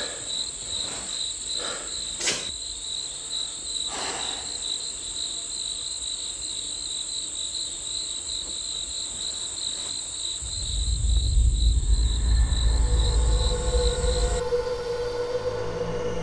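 Night ambience of crickets chirping steadily, with a few soft knocks in the first few seconds. About ten seconds in, a deep low rumble swells up and the cricket chirping cuts off suddenly, giving way to held tones of a low, ominous music drone.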